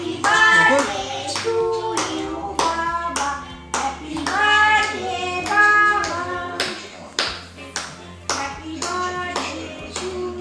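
Singing with steady rhythmic hand clapping, about two claps a second.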